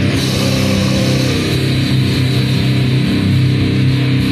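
Crust punk music from a demo cassette: heavily distorted electric guitars and bass playing loud, sustained chords at an even level.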